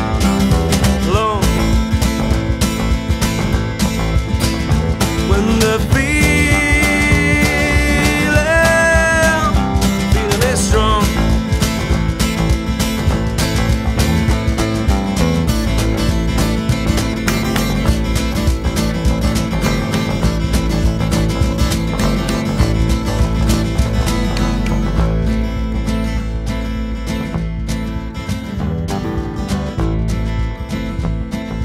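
Live acoustic-band music in an instrumental passage with no lyrics: electric bass guitar and guitar playing, with a wavering lead melody line about six to nine seconds in. The music gets quieter near the end.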